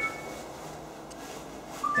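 Low, steady background noise, with a faint thin high tone that fades out in the first moment.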